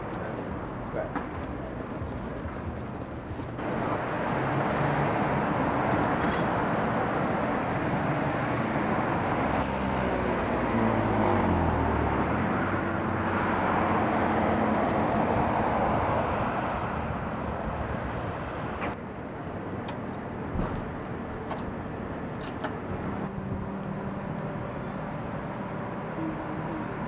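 Road traffic on a city street. A vehicle passes close, swelling from about four seconds in and fading after about sixteen seconds, its engine note dropping in pitch as it goes by.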